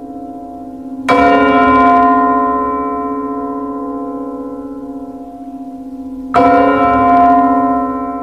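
A deep bell tolling in the film's added musical score, struck twice about five seconds apart, each stroke ringing on and fading slowly over a low sustained hum.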